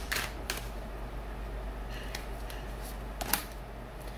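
Tarot deck being shuffled by hand: a few sharp clicks of cards against each other, the loudest about three seconds in, over a steady low hum.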